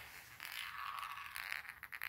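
Small plastic ball from a roll-on deodorant rolling across a ceramic tile floor, faint, with a few quick clicks near the end.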